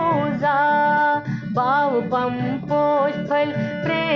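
A woman singing a Kashmiri bhajan over instrumental accompaniment, her voice sliding and bending between held notes.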